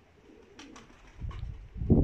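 Domestic pigeons cooing softly, with a few light clicks. A low rumble builds up toward the end.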